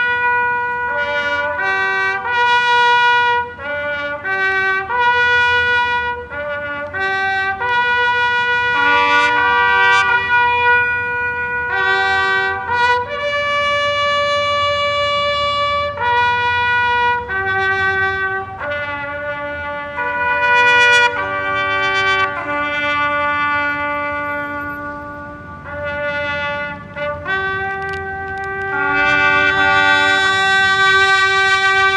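A solo bugle plays a slow call on a few notes. Shorter notes lead into long held ones, with brief breaks between the phrases.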